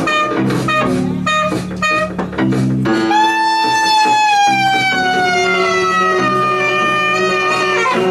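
Free-improvised music from a small ensemble: short repeated notes over low held tones, then from about three seconds in a long high note that slowly slides downward in pitch over several seconds, with low tones held beneath it.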